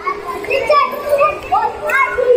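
Many children's voices chattering at once in a large hall, with a steady tone running underneath.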